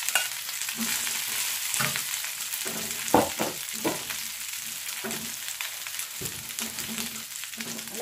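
Leftover rice frying in a pan, a steady sizzle, with a few scrapes and knocks of a metal spoon and spatula on the pans; the loudest knock comes about three seconds in.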